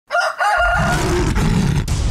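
A rooster crow in two short phrases at the start. From about half a second in, a deep steady rumble comes in under it and carries on.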